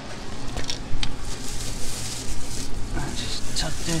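Thin plastic masking sheeting crinkling and rustling as it is handled and smoothed over a car body, with scattered crackles, over a low steady hum.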